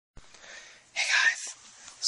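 A person's short, breathy burst of noise about a second in, after a click as the recording starts.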